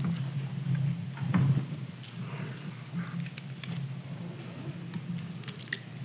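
Quiet room tone of a lecture hall, with a steady low electrical hum from the sound system and a few faint clicks and shuffles, one about a second in and several near the end.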